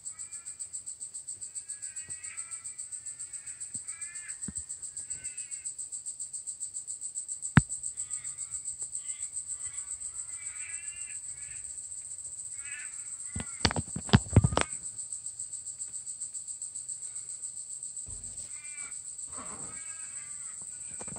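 Outdoor bush sound: a steady, high insect drone pulsing a few times a second, with crows cawing in runs of calls. A sharp knock sounds about a third of the way in, and a quick cluster of knocks comes just past the middle.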